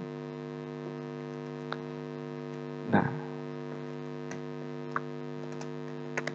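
Steady electrical hum with many overtones picked up by the recording chain, with a few faint clicks.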